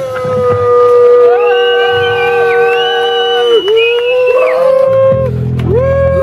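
Long held howled notes from several voices, two or three overlapping at a time. The main note dips briefly about three and a half seconds in, breaks near five seconds, and starts again just before the end.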